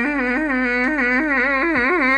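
A goat bleating: one long, loud, human-like cry with a quavering pitch that climbs toward the end.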